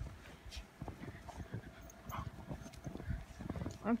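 Footsteps crunching in fresh snow, with irregular soft thuds and rustles from the hand-held phone moving.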